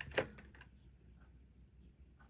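Faint light clicks of crochet hooks being picked through in a hook set, over a low steady hum.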